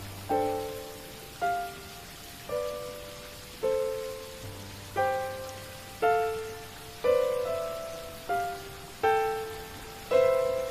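Slow keyboard melody, a note or chord struck about once a second and each one fading away, with an occasional low bass note underneath, over a steady hiss of falling rain.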